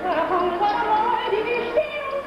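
A woman singing a melismatic melody with a wavering, ornamented pitch, accompanied by a traditional Mongolian instrument orchestra.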